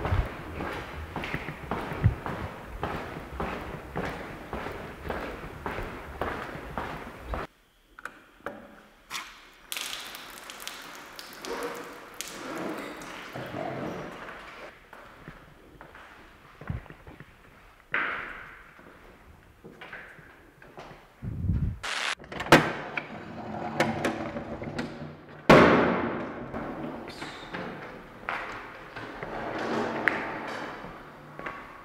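Footsteps on a littered hard floor, crunching and scuffing over plaster debris, with scattered knocks and thuds. A few louder, heavy thumps come in the second half.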